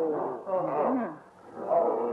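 Men groaning and whimpering in pain after being beaten, a few short drawn-out moans with a brief lull about a second and a half in.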